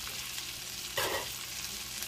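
Butter sizzling steadily around striped bass fillets pan-frying in a cast iron skillet, with one brief short sound about a second in.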